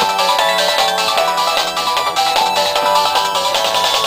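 Music with a steady beat and a melody.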